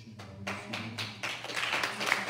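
A small congregation clapping: a few scattered claps, then applause that builds and grows louder through the second half.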